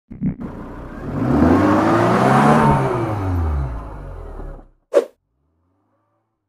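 A car engine revving up and dropping back down, swelling in the middle and fading out just before five seconds in, as an intro sound effect. A single short blip follows about five seconds in.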